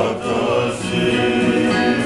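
A group of men and women singing a Tongan kava-circle song together in several voices, accompanied by guitar and violin.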